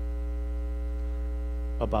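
Steady low electrical mains hum, with several fainter steady tones above it. A man's voice comes in briefly near the end.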